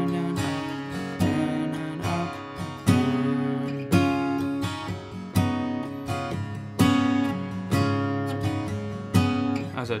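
Gibson Studio steel-string acoustic guitar, in double drop D tuned down a half step, played slowly around a D chord with D7 and D9 changes (mixolydian notes). A chord or note is struck roughly every three-quarters of a second, and each one rings out and fades before the next.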